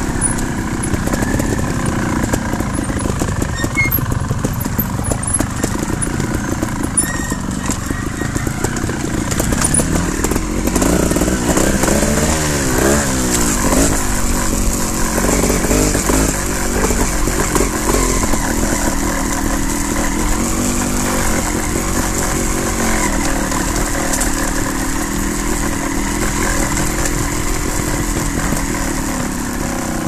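Trials motorcycle engines running at low speed on a trail, the revs rising and falling with the throttle, most of all in the middle stretch, where two engine notes climb and drop past each other.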